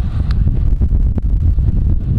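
Wind buffeting the microphone of a camera on a moving road bike: a loud, uneven low rumble.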